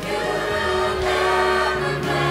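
Music: a choir singing, holding long notes.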